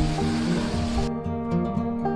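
Instrumental background music. A hiss of outdoor background noise underneath cuts off abruptly about a second in, leaving the music alone.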